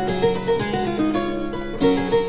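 Muselar virginal, a copy of a 1634 Andreas Ruckers, playing solo: plucked notes in several voices held over one another, with new notes struck every quarter second or so.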